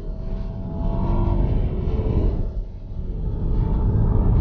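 Nissan X-Trail's 2.5-litre four-cylinder petrol engine pulling hard under full throttle through its CVT, heard inside the cabin with road rumble, as the car accelerates past 100 km/h. The sound eases briefly a little before three seconds in, then builds again.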